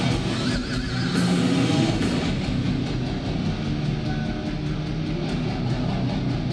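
Heavy metal band playing loud, with distorted electric guitars, heard from the front of the crowd.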